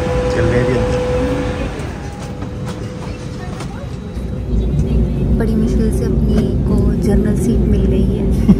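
Indistinct voices over the steady hum of an airliner cabin during boarding. About halfway through, the low cabin rumble becomes louder.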